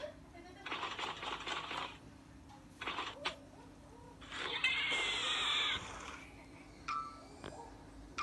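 A smartphone's small speaker playing a children's cartoon soundtrack in short bursts. About five seconds in comes a louder call of about a second with a wavering pitch, like an animal bleating.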